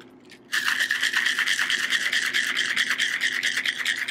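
Ice clattering inside a metal cocktail shaker being shaken hard, a fast run of rattling hits that starts about half a second in.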